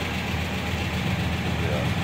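Volkswagen Kombi Clipper's 1600 air-cooled flat-four engine with twin carburettors idling steadily.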